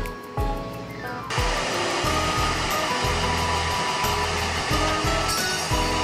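Handheld hair dryer blowing on a cut-off ponytail to dry it, starting about a second in and cutting off just before the end, over background music.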